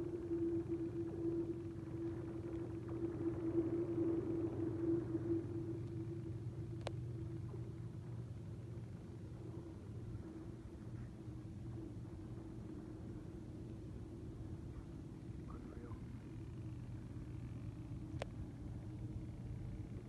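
Lake ice cracking as it warms and expands: a low, steady drone that fades over the first several seconds, with two sharp cracks, one about seven seconds in and one near the end.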